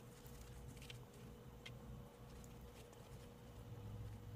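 Near silence: faint rustling and a few soft ticks as a denim pin cushion stuffed with rice and polyfill is turned and pressed in the hands, over a faint steady hum.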